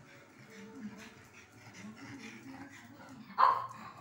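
A pug barks once, a single short, loud bark about three and a half seconds in, excited by animals on the television.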